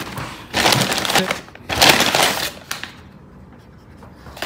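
Paper and foil takeout wrapping crinkling as it is handled and opened, in two loud rustling bursts, the first about half a second in and the second about two seconds in.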